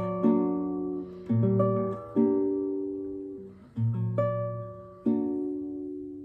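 Nylon-string classical guitar played slowly: about five plucked chords with low bass notes, each struck and left to ring and fade.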